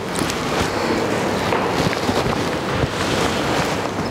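Steady rushing noise, like wind or air hiss on a microphone, with no speech.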